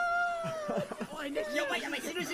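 A very high-pitched voice holding a drawn-out cry for nearly a second, then several voices talking over one another.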